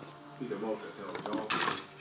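A man speaking briefly over background music.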